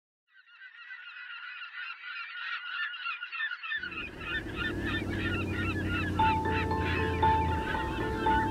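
A large flock of birds calling over one another, fading in from silence. About halfway a low steady rumble joins them, and near the end sustained musical notes come in.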